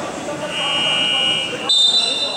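Two shrill signal tones during a stoppage in a basketball game: a steady one lasting about a second, then a brief, louder, higher-pitched one near the end.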